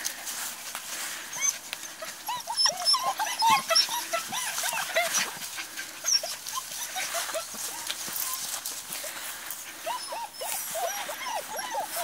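Bohemian Shepherd puppies whining and yipping: many short, high-pitched squeals, several overlapping, busiest a couple of seconds in and again near the end.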